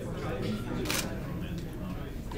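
A single camera shutter click about a second in, over the background chatter of people talking in a room.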